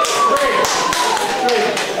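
Taps and thuds of wrestlers and a referee's hand on a padded ring mat during a pin attempt, with one drawn-out voice falling slowly in pitch over them.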